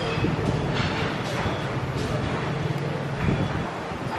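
Busy restaurant dining-room ambience: a steady low mechanical hum under the murmur of other diners' voices, with a few short clinks.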